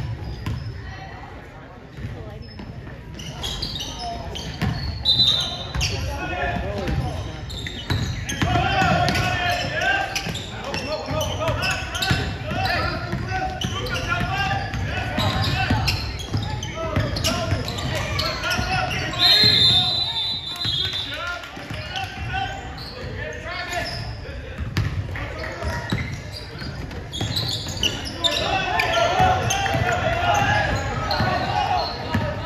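Basketball bouncing on a hardwood gym floor during play, with players' and spectators' voices echoing through the large hall. A brief high shrill tone sounds about five seconds in and a longer, louder one about twenty seconds in.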